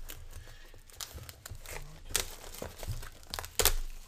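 Clear plastic shrink wrap on a sealed trading-card box crinkling and tearing as it is handled and pulled off, in a run of short crackles with a sharper one near the end.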